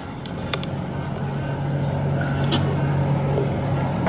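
Ride inside a moving vehicle: a steady low engine and road hum that grows a little louder after the first second.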